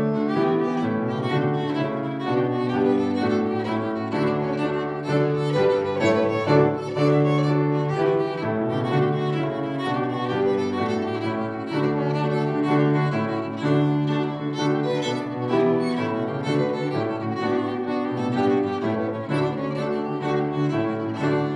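Fiddle and piano playing a lively jig in 6/8 together, the fiddle carrying the melody over piano accompaniment.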